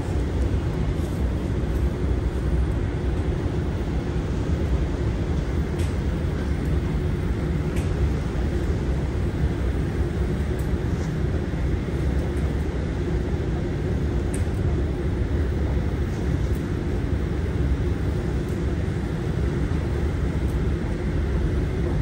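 Steady low rumble and hum of a long escalator running downward, heard from a rider on it, with a few faint clicks now and then.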